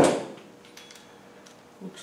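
A single sharp knock with a short ring as a tool works the rear axle's differential plug out, then quiet.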